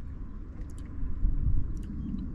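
Low, uneven outdoor rumble that swells from about a second in, with a few faint high ticks.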